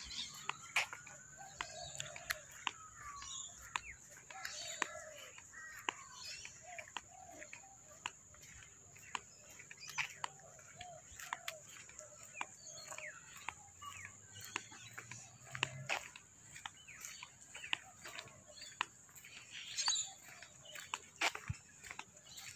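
Birds calling and chirping, with many short calls and a few higher chirps, over a steady high-pitched whine. Frequent light clicks run through it, in keeping with footsteps on the footpath while walking.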